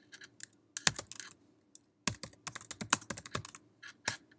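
Typing on a computer keyboard: a few scattered keystrokes, then a quick run of keys about two seconds in as a search phrase is typed.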